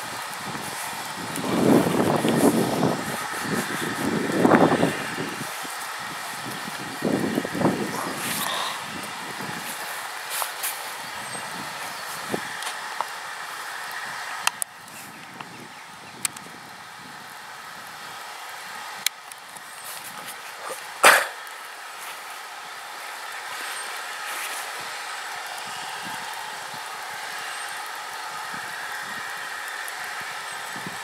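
Steam locomotive getting under way: three heavy hissing exhaust blasts in the first eight seconds, then a quieter steady background with one sharp knock about twenty-one seconds in.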